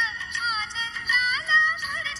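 A recorded Marathi Ganpati song: a high singing voice carries a melody over music.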